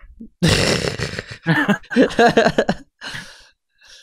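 Men laughing in a run of short bursts, ending in a breathy, sigh-like exhale a little after three seconds in.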